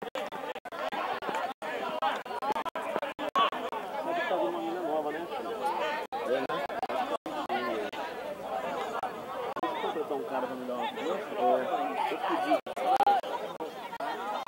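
Indistinct chatter of several people talking over one another, with no words clear and no other sound standing out. The sound is cut by many brief dropouts.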